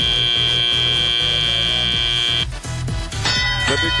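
Competition field buzzer sounding one steady tone for about two and a half seconds, marking the end of the autonomous period, over arena music with a repeating bass line.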